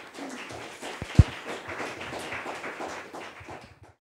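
Audience applauding in a hall, a dense patter of many hands that dies away at the very end. About a second in there is a loud low thump, the loudest sound here.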